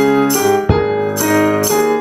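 Yamaha digital piano played in a steady rhythm, its chords changing every half second or so, with light hand percussion keeping time on top in short, regular high-pitched shakes.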